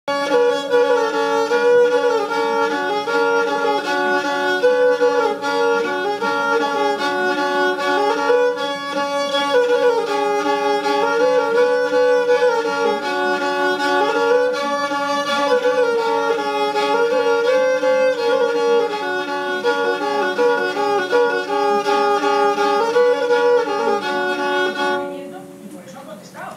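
Rabel, a folk bowed string instrument, playing a repeating tune on one string over a steady drone string. The tune stops about a second before the end.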